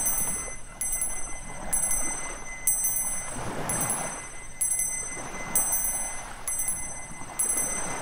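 Tibetan Buddhist hand bell rung over and over, a high ringing struck about once a second, with ocean surf washing underneath.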